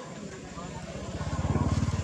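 A motor vehicle's engine passing nearby, a low rapid pulsing that grows louder and peaks about a second and a half in.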